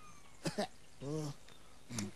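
A falling whistle glide trails off at the start. A short click follows, then a brief laughing vocal exclamation, "hey!", about a second in.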